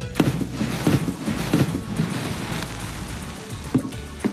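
A sudden rushing hiss as a large cloud bursts up out of a tub, liquid nitrogen boiling off violently, easing over a few seconds, with background music underneath.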